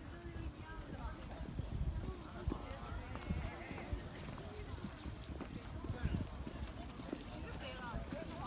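Footsteps on a paved path, irregular short steps, with people's voices talking in the background.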